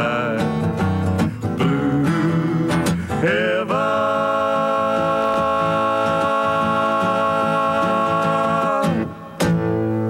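Two men singing together to a strummed acoustic guitar, the closing phrase ending on a long held note of about five seconds. A final guitar chord is struck near the end.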